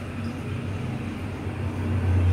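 Room tone between sentences: a steady low hum with a faint even hiss, getting a little louder near the end.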